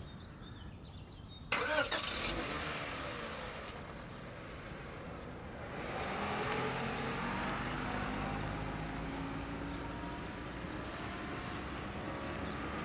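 A car engine starts with a sudden loud burst about a second and a half in, then runs steadily, growing louder about six seconds in.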